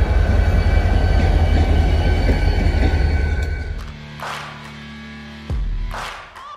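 Diesel locomotive running past with a deep, steady engine rumble and a steady whine above it, fading out a little before four seconds in. It is followed by a short musical sting with a whoosh and a sudden thump near the end.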